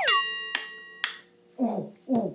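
Two finger snaps about half a second apart, over a ringing tone that follows a falling whistle-like glide and fades out after about a second. Near the end come two short vocal sounds, each falling in pitch.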